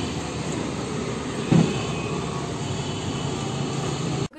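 Steady hum of road traffic from motorbikes and other vehicles passing on the street, with a brief low thump about a second and a half in.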